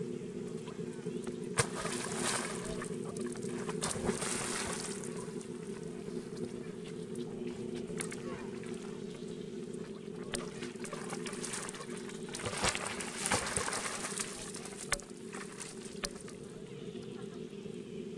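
Water splashing and sloshing as macaques swim and paddle in a pond, in bursts about two, four and thirteen seconds in, with a few sharp splashes, over a steady low hum.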